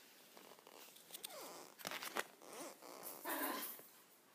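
Small Pomeranian dog whining softly in short sliding glides, then a brief louder rustle near the end.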